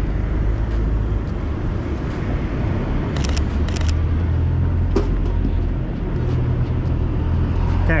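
City street noise: a steady low rumble of road traffic, with a few short, sharp ticks about three seconds in.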